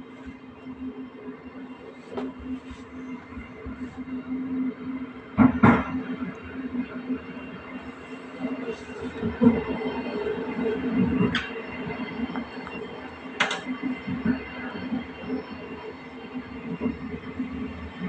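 Passenger train running along the track, heard from inside the coach: a steady low hum from the running gear and engine, with a few sharp knocks, the loudest about five and a half seconds in.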